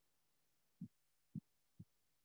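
Near silence, broken by three faint, short low thumps about half a second apart, the last one the weakest.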